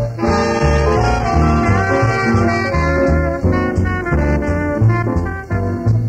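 Jazz band playing live: brass and saxophones carry the tune over a pulsing line of low bass notes. It is an old live tape recording.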